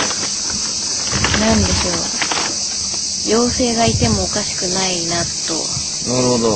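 A steady, high-pitched chorus of insects that does not let up.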